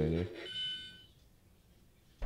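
Electric-shock lie detector toy finishing its scan: its rapid pulsing scan sound, about four pulses a second, stops just after the start. About half a second in, a short steady electronic beep signals that the reading is done.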